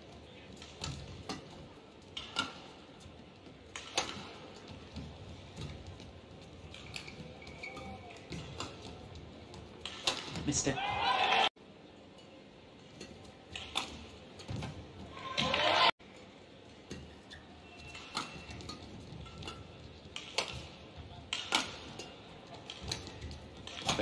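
Badminton rallies: rackets strike the shuttlecock in sharp clicks every second or two, with shoe squeaks on the court. Twice the crowd noise swells at the end of a point and breaks off suddenly.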